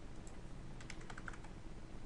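A quick run of faint computer-keyboard keystrokes about a second in, typing in a numeric offset value, over a low steady hum.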